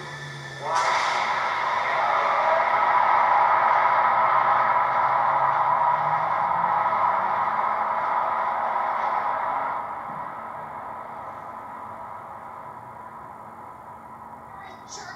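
Sci-fi film soundtrack played through a flat-screen TV's speakers: a rocket-engine effect starts suddenly about a second in. It holds loud and steady for several seconds, then fades out over the last few seconds.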